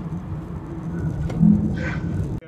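Inside-the-cabin sound of a Suzuki Alto driving on a highway: a steady low rumble of engine and tyre noise, with a brief louder note about one and a half seconds in.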